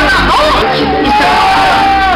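Many voices shouting and calling out together over loud live music.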